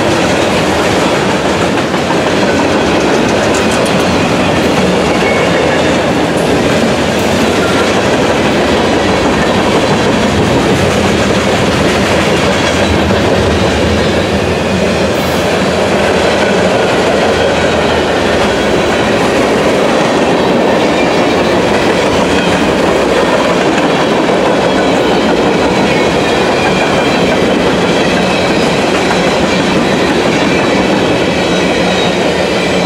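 Freight train Q424 passing close by: a loud, steady rumble of steel wheels on rail as covered hoppers, autoracks and coal cars roll past.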